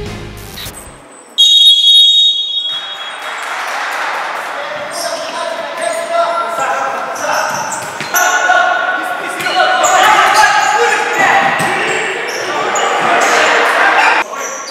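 Title music ends, and about a second and a half in comes a loud, high whistle blast of about a second. After it, futsal play echoes through an indoor hall: the ball knocks on the wooden floor and players shout.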